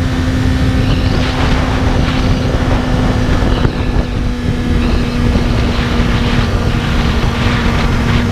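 BMW S1000RR superbike's inline-four engine running at a steady pitch while cruising, heard under heavy wind buffeting on the microphone.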